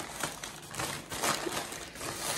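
Close, irregular rustling and crinkling of things being handled.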